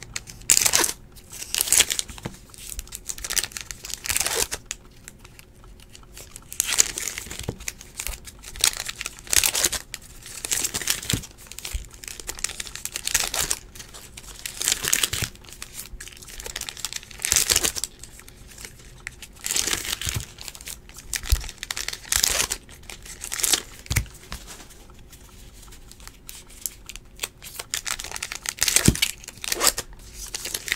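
Foil trading-card pack wrappers crinkling and tearing as packs are ripped open and the cards handled, in repeated bursts of about a second with short pauses between.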